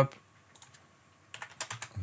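A quick run of computer keyboard keystrokes about a second and a half in, after a quiet stretch.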